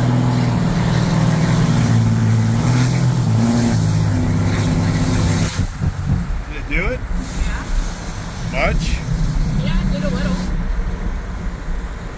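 Straight-piped Ram pickup's Cummins diesel engine at full throttle, heard from inside the cab with a window down. The engine runs loud for about five and a half seconds, then drops off as the throttle is lifted, with a few short exclamations from the people in the cab.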